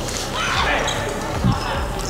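Echoing sports-hall background with distant voices, and a single low thud about one and a half seconds in.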